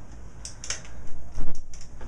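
An AR-15 rifle and its sling being handled: a few short clicks and rattles, the loudest about three-quarters of the way in.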